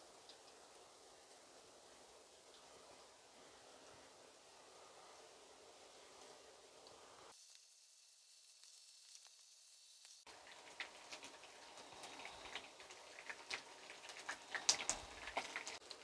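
Oil sizzling faintly in a frying pan as egg-dipped lavash triangles fry. It drops almost to silence for a few seconds in the middle, then comes back with crackling and spitting that grows louder toward the end.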